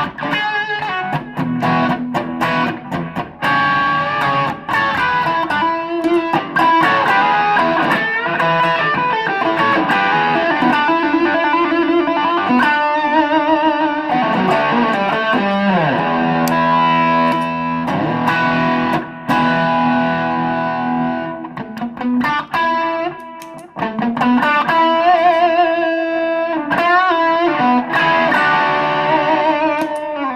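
Gibson Les Paul Studio electric guitar through a distortion pedal and booster into a Fender Supersonic amp's Bassman channel, playing a lead line of single notes with slides, bends and wide vibrato.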